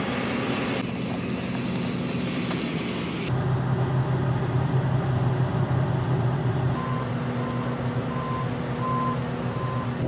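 John Deere combine engine running steadily, heard first from outside and then, after about three seconds, as a low hum through the closed cab. From about seven seconds in, a short electronic beep in the cab repeats about twice a second.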